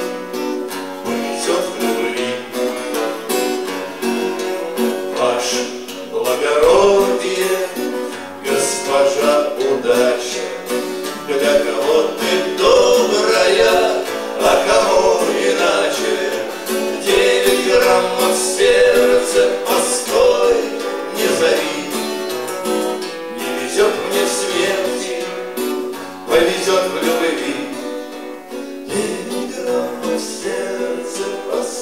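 Live bard song: two acoustic guitars, a steel-string and a nylon-string, strummed and picked together, with male singing.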